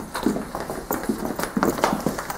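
Footsteps of several children walking across a wooden floor, irregular knocks a few times a second.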